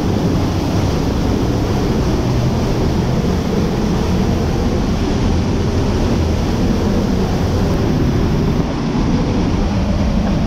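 Waterfall pouring into a pool, heard close up from behind the falling curtain of water: a loud, steady, deep rush of water.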